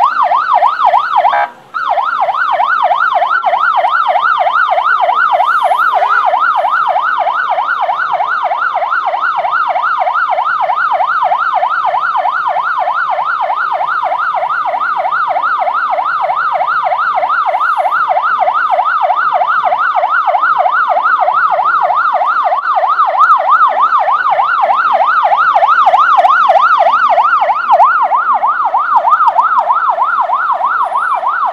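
Electronic police siren sounding a fast yelp, its pitch sweeping up and down several times a second, loud and continuous, with a brief cut-out about two seconds in.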